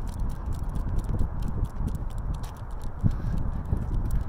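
Footsteps of a person walking on pavement, a series of soft irregular thumps over a steady low rumble of wind on the microphone.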